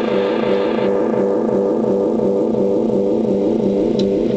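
Guitar delay pedal in runaway feedback: a loud, steady droning loop of pitched tones that wobble in an even pattern a few times a second. A higher hiss drops out about a second in.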